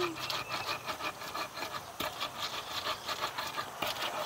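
Hand-held stone pestle grinding fresh red chillies in a thick wooden mortar: a quick, even run of scraping, crushing strokes of stone against wood as raw sambal is pounded.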